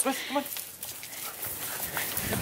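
A woman's voice briefly calls a dog's name at the start, then only faint, steady outdoor background noise with a few light ticks.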